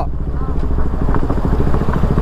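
Motorcycle engine running steadily under way on a rough gravel road, heard from the rider's seat as a rapid, even train of firing pulses over a low wind rumble.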